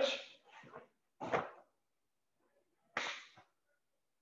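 A sharply shouted karate count at the start, then three short, sharp whooshes of a karate gi and breath as kata strikes and blocks are thrown: the first two close together early, the third about three seconds in.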